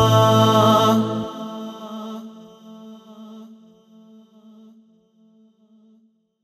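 Final held chord of an unaccompanied, vocals-only nasheed: layered voices sustain a steady chord over a low hummed drone. The low drone stops about a second in, and the remaining voices fade out slowly with reverb, nearly gone near the end.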